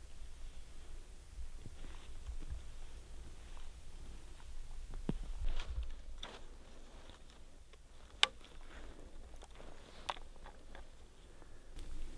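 Soft crunching footsteps and gear handling over a low wind rumble, then an arrow being nocked onto a compound bow: small clicks, the sharpest about eight seconds in and a smaller one about two seconds later.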